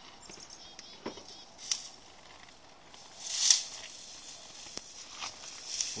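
Scattered footsteps crunching in snow, with one louder, longer crunch about halfway through.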